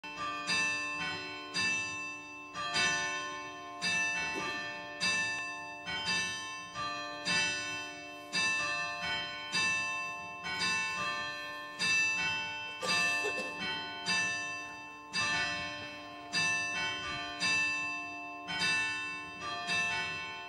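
A church bell rung steadily, about one stroke a second, each stroke ringing on into the next; the ringing dies away after the last stroke at the very end.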